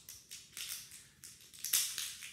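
A string of short rustling, hiss-like noises close to the microphone, several a second, the loudest one near the end.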